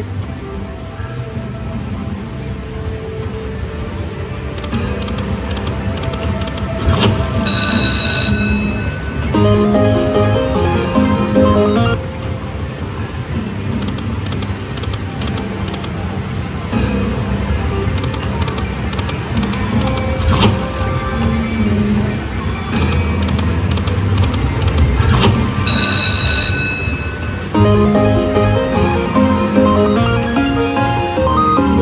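Pure Cash Dynasty Cash video slot machine's free-spin bonus audio: game music and short melodic win jingles play as the reels spin and small line wins add up, over a steady low background rumble. A bright ringing chime sounds twice, about 8 seconds in and again about 26 seconds in.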